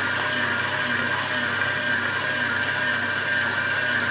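Stand mixer's motor running steadily while its flat beater churns thick cookie dough in a stainless steel bowl, with a faint low pulse about twice a second.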